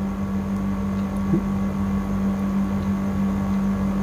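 A steady low hum with no change through the pause.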